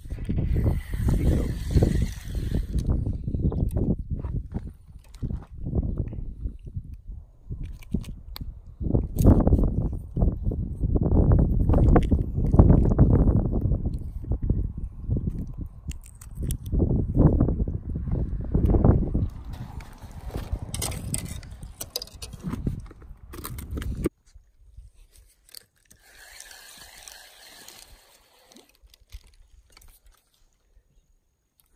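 Gusty low rumble of wind buffeting and handling noise on the microphone, loud and irregular, cutting off suddenly about 24 seconds in and leaving only faint noise.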